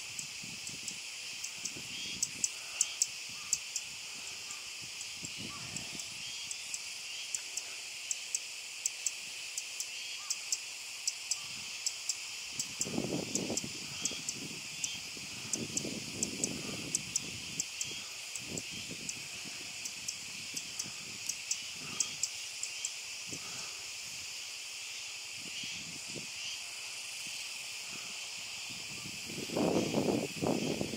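A chorus of Kuroiwa's cicadas (Meimuna kuroiwae) keeps up a steady, high, loud buzzing, with many sharp ticks over it. A few low, muffled rumbles come midway and at the end.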